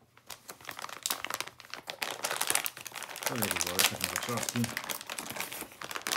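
Clear plastic bag crinkling and crackling irregularly as it is handled and opened around a pair of fabric-and-leather gloves. A voice speaks briefly about halfway through.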